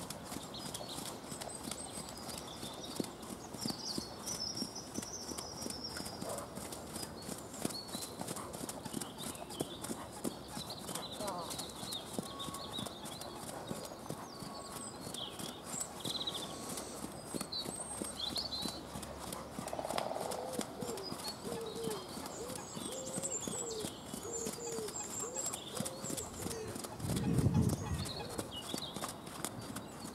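Hoofbeats of a pony trotting on a dirt arena surface, in a steady rhythm, with birds singing. About 27 s in there is a short, louder low sound.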